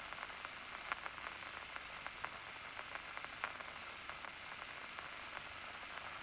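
Steady hiss with faint, irregular clicks scattered through it, like static.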